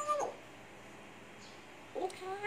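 African grey parrot calling: a pitched call falls in pitch and ends just after the start, a pause follows, then another call begins right at the end.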